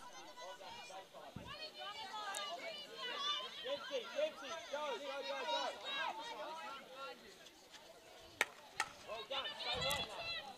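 Faint, distant players' voices calling and shouting to each other across a field hockey pitch, many overlapping. Two sharp clicks near the end.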